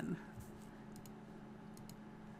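A few faint computer clicks, in two close pairs, one near the middle and one near the end, over a steady low hum; the clicking advances the presentation to the next slide.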